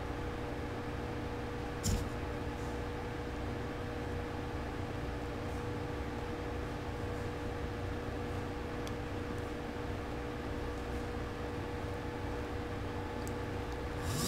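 Steady low hum with a constant tone, and a single click about two seconds in.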